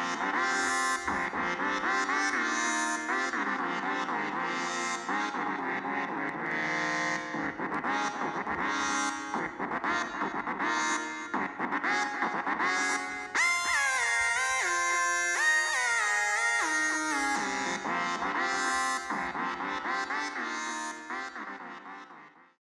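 Synthesizer music: sustained chords whose brightness swells and falls about once a second, with a run of stepping, sliding notes in the middle, fading out at the end.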